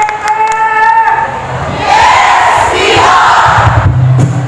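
A cheer squad shouting a yell in unison: a held, drawn-out call for about the first second, then a loud group shout. Music with a steady low bass comes in near the end.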